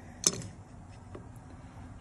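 A sharp metal click as the guide level is set onto the pilot in the valve guide, followed about a second later by a fainter tick.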